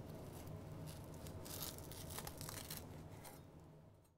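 Chef's knife sawing down through a burger in a toasted, buttered bun on a wooden cutting board: a series of faint, crackly rasps as the blade cuts the crust, over a low steady hum. The sound fades near the end.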